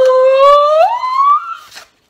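A woman's high-pitched excited squeal, one long wordless note rising in pitch and ending shortly before the two seconds are out.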